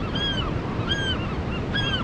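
Gulls calling, three short arched calls about a second apart, over the steady rush of breaking surf.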